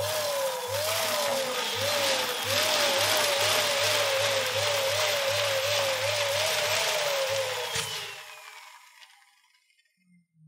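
Electric balloon pump running and inflating a clear balloon: a steady rush of air with a whine that wavers up and down about twice a second. It stops about eight seconds in.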